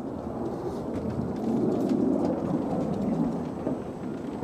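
Steady low rumble of riding an electric unicycle, its tyre rolling off the asphalt path onto a wooden boardwalk, mixed with wind on the microphone; it swells a little midway.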